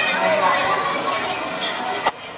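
Several people's voices calling out and chattering during football play, overlapping and untranscribed.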